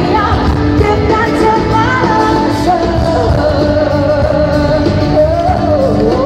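Live pop concert with a full band, heard from the crowd in an arena: a female singer's amplified voice moves through a phrase, then holds one long note from about three seconds in.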